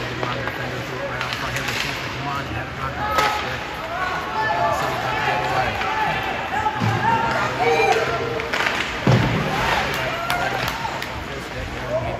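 Ice rink game sounds during play: scattered sharp clacks of hockey sticks and puck, with a loud knock and thud about nine seconds in, over a steady low arena hum. Indistinct voices call out through the middle of the stretch.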